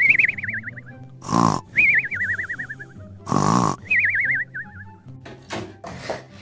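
Cartoon-style snoring sound effect: a short snort followed by a wavering whistle that falls in pitch, repeated three times about two seconds apart, over quiet background music.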